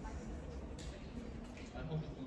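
Street ambience with indistinct voices of passersby talking nearby, over a steady low background hum.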